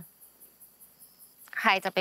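Crickets chirring faintly and steadily in the background. A woman's voice cuts in about one and a half seconds in.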